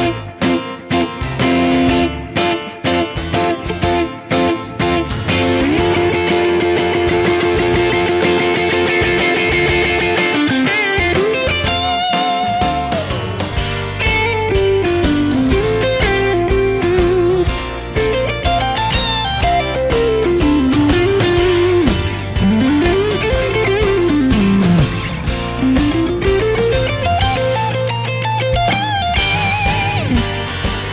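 Vox Bobcat semi-hollow electric guitar with V90 pickups through a Vox AC30 amp, playing over a backing track with bass. For about the first ten seconds it holds ringing F chord-shape notes as a drone; after that it plays single-note lead lines that slide and bend widely up and down.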